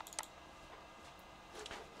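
Two quick computer mouse clicks right at the start, then quiet room tone.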